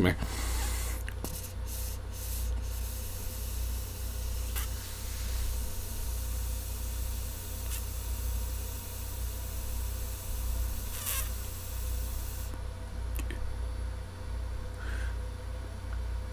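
A long, faint draw on a vape pen: a soft airy hiss that stops about twelve seconds in, over a steady low electrical hum. The user finds the pen is not getting hot enough.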